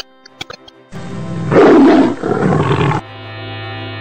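Intro sound effect: after a few faint clicks, a loud roar starts about a second in and is loudest near the middle. At about three seconds it gives way to a steady low droning tone.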